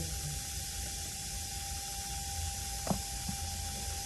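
Steady background hiss with a faint constant hum, and one soft click about three seconds in.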